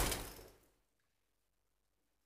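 Near silence: faint room noise fades out within the first half second, then the recording drops to dead silence.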